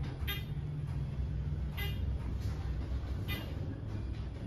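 Westinghouse traction elevator, modernized by ThyssenKrupp, travelling down: a steady low rumble of the moving cab, with a short tick about every one and a half seconds.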